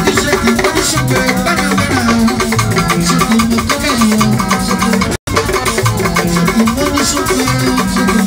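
Live highlife band music: a repeating bass line over a steady beat of drums and rattle-like shakers, with pitched instruments in the middle range. The sound cuts out for an instant about five seconds in.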